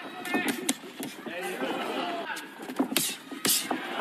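Boxing arena sound: sharp slaps of gloves landing as one boxer works the other on the ropes, several of them, over voices shouting from the crowd and corners.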